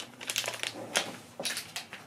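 A clear plastic specimen bag crinkling and crackling as it is folded over by hand, in irregular crackles with a short lull about a second in.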